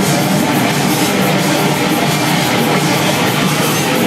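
Loud, distorted live experimental music played through an amplifier: a steady, dense wall of noise with no clear beat.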